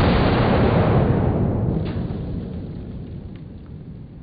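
A single 10 mm pistol shot from a Glock 20, heard from the target end: a sudden loud crack followed by a deep rumble that dies away over about three seconds.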